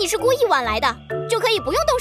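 A high, cartoon-style voice in two short phrases with strongly sliding pitch, over soft background music.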